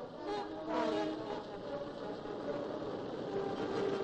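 Engine of a veteran motorcar running as it drives along the road, a busy rattling chug, over faint background music.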